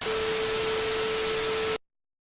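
TV static hiss with a steady tone under it, the glitching colour-bars transition effect. It cuts off suddenly just before the end.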